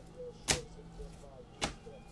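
Two sharp clacks, about a second apart, as trading cards are handled and set down on the table, over a faint steady room hum.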